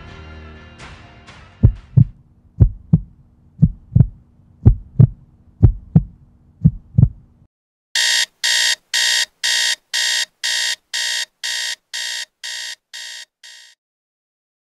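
Music fading out, then a heartbeat sound effect: six paired thumps, about one beat a second, over a low hum that stops at about seven and a half seconds. After a short pause, a digital alarm clock beeps rapidly, about three beeps a second, fading out near the end.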